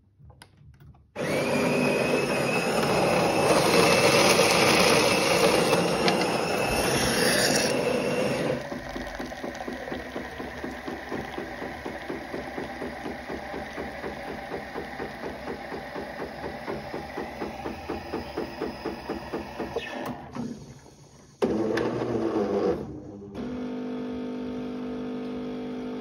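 Jura X9 automatic coffee machine making a cappuccino. The grinder runs loudly for about seven seconds. Then the machine pulses rhythmically while frothed milk pours from the spouts, and near the end there is a short loud burst followed by a steady hum.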